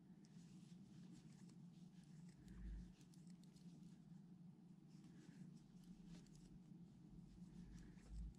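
Near silence: faint scratchy rustling and light ticking of yarn being worked with a crochet hook, over a low steady hum, with a soft low bump about two and a half seconds in and another near the end.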